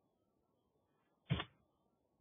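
A single sharp keyboard keystroke thump about 1.3 seconds in: the Enter key struck once to run a typed command.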